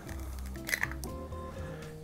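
Soft background music with steady held notes, and a little under a second in a short wet crack and squish as a hen's egg is broken open by hand over a bowl.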